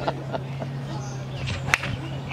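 A titanium driver strikes a golf ball teed up high, giving one sharp crack about three-quarters of the way in. A faint steady low hum runs underneath.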